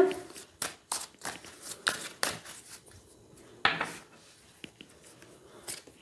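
A deck of tarot cards being shuffled by hand: a run of short, irregular snaps and slaps of the cards, thinning out in the second half.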